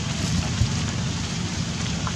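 Steady hiss of rain falling, with a low rumble underneath and a single soft knock just after half a second in.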